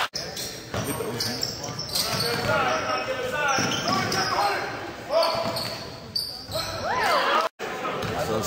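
Basketball game sound in an echoing gym: sneakers squeaking on the hardwood court, the ball bouncing, and players and spectators calling out, with sharp squeaks about four and seven seconds in.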